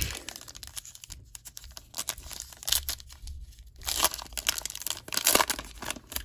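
Foil trading-card pack wrapper being torn open and crinkled by hand, in irregular bursts of crackle that come loudest about a second in, near three and four seconds, and again just after five.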